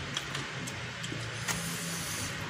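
Fingers mixing rice into fried instant noodles on a plate, giving a few soft clicks over a steady hiss and low hum.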